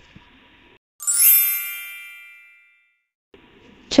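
A bright chime sound effect about a second in: one ding with a tinkling, sparkly top that rings out and fades away over under two seconds.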